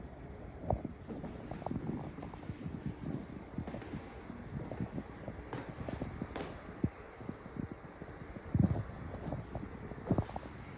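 Footsteps walking and going down an indoor staircase: a run of irregular soft thumps, with one louder thump near the end.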